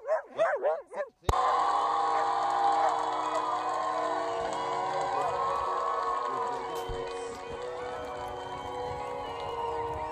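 A few quick excited barks from a border collie in the first second, then music cuts in abruptly and plays on steadily.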